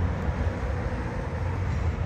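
Steady low engine rumble with a faint hum above it, with no distinct starts or stops.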